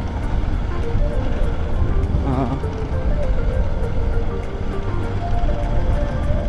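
Low wind rumble and road noise from a moving motorcycle, with faint background music and a short snatch of voice about two seconds in.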